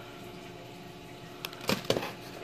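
A card-and-plastic blister pack of fishing hooks handled and set down: a few short rustles and taps in the last half second, over a faint steady hum.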